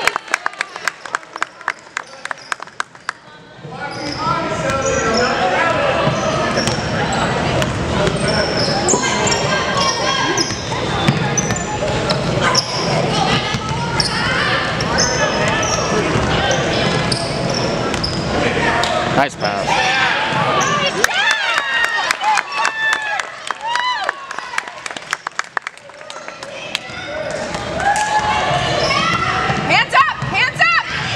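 Basketball bouncing on a hardwood gym floor in a large echoing hall, with many spectators' and players' voices shouting at once. The voices swell loud about four seconds in and drop away for a few seconds near the end.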